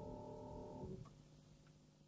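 The last chord of a song dying away on a grand piano, held and then stopped a little under a second in, leaving quiet room tone.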